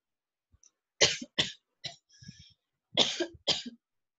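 A person coughing: a quick run of two or three coughs about a second in, then two more coughs near the end.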